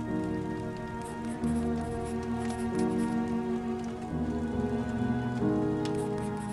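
Slow, soft instrumental music of held chords that change every second and a half or so, over a steady patter of rain.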